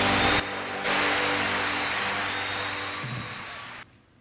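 An orchestra's closing chord fades out under audience applause, which swells about a second in. The sound cuts off abruptly near the end.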